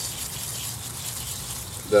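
Steady hiss of coil-cleaner solution sprayed from a pump sprayer onto an air-conditioner evaporator coil, saturating the fins.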